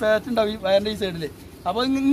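A man speaking Malayalam in short phrases, with a brief pause a little past halfway.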